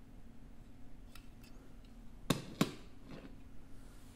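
A small die-cast metal toy car, a Majorette Matra Simca Bagheera, handled and set down on a plastic cutting mat: a few faint ticks, then two sharp clicks about a third of a second apart, a little over two seconds in.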